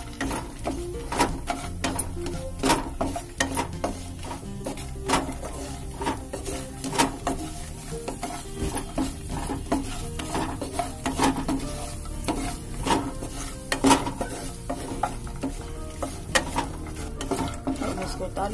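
A spatula scraping and knocking against a granite-finish nonstick kadhai as fox nuts (makhana) are stirred while roasting in ghee, making irregular clicks and scrapes over a light sizzle.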